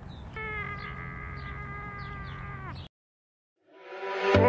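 A single long held tone, ending in a slight downward slide, over outdoor background noise with a low rumble and short chirps. The sound then cuts out, and music fades in near the end.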